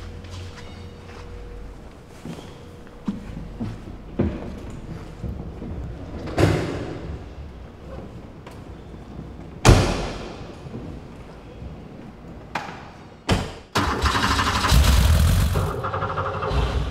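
Several thumps, the loudest two about six and ten seconds in, from the car's doors being shut. Near the end the Porsche 911's air-cooled, naturally aspirated flat-six with individual throttle bodies is started on the starter and catches at once from cold, running loudly.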